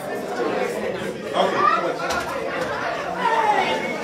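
Crowd chatter: many people talking at once in a crowded indoor hall, with no single voice standing out.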